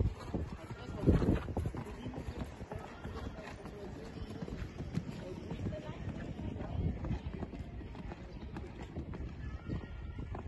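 A show-jumping horse's hoofbeats cantering on sand footing, with a louder thud about a second in.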